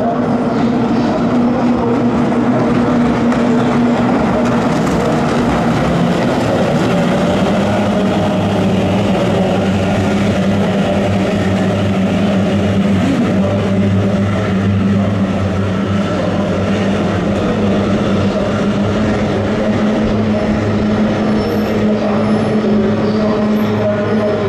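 Several kyotei racing boats' two-stroke outboard engines running at full throttle together, a steady, loud engine note with only slight shifts in pitch as the boats race and round the turn marks.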